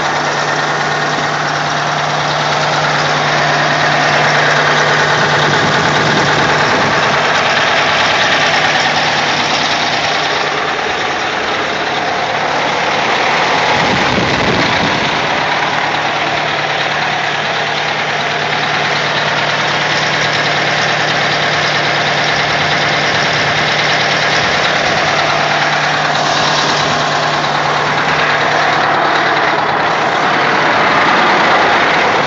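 Detroit Diesel 8V92 two-stroke V8 diesel idling steadily, with an even, unbroken drone. It has been freshly tuned with new stock-size injectors, both banks' injectors synced and the timing set, and the owner says it runs very good at idle.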